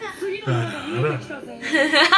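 A woman laughing, over a character's spoken line from the anime episode playing.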